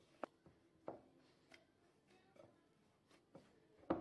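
Hands kneading a flour and black sesame dough in a glass bowl: faint, soft thuds and squishes about every half second to second as the dough is pressed and folded against the glass, the loudest one near the end.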